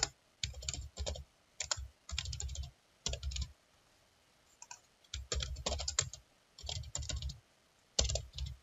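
Typing on a computer keyboard: quick runs of keystrokes, a pause of about a second and a half in the middle, then more runs.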